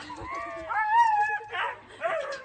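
A husky making drawn-out, whining howl-like calls that rise and fall in pitch, the longest about halfway through, as it protests being hosed down.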